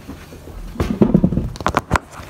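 Handling noise: rustling and a quick run of sharp knocks and clicks close to the microphone, starting about a second in and busiest near the end.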